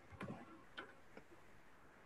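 Near silence on an open video-call line, with a few faint short ticks and sounds in the first second or so.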